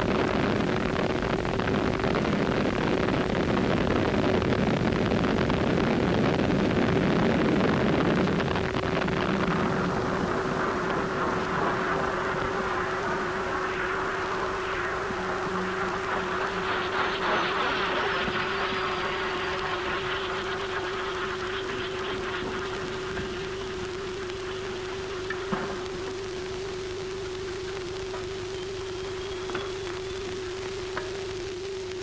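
Roar of the Burya cruise missile's rocket boosters at launch: a loud, even rush that is strongest for the first several seconds and then slowly fades. A steady hum runs under it throughout, and a couple of short clicks come near the end.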